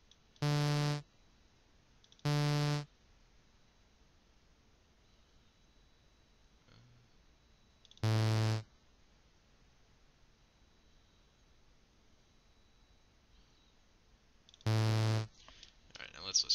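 Four short, separate synthesizer notes from StageLight's Analog Synth instrument, each about half a second long, sounding as notes are placed in the piano roll. The first two are at one pitch and the last two are lower, with near silence between them.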